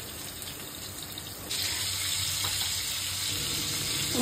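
Sliced onions frying in oil in an aluminium pot, a steady sizzle. It jumps louder about a second and a half in and stays even after that.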